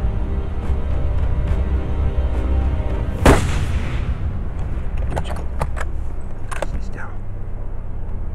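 A single loud rifle shot about three seconds in, from a .375 hunting rifle, with a brief echo after it. Steady background music plays throughout.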